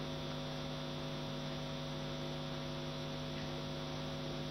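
Steady electrical mains hum in a press-conference microphone feed: several low tones held evenly, with a faint hiss.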